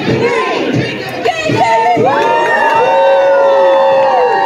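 A group of children shouting and cheering together; from about halfway through, many voices join in one long held cry.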